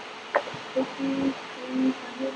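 A child's voice answering faintly, far from the microphone, in short low snatches, with a short tap about a third of a second in.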